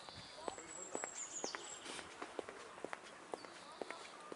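Footsteps on a paved path, about two a second, from someone walking steadily. Birds sing over them in high, thin whistled phrases, one falling away about a second and a half in.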